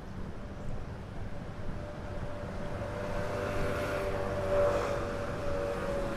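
Traffic passing on a city street: a steady rush from passing vehicles, with a vehicle's engine hum growing louder from about halfway through.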